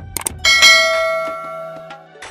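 A quick double click, then a bright bell ding that rings out and fades over about a second and a half: the sound effect of a subscribe-button and notification-bell animation, over quiet background music.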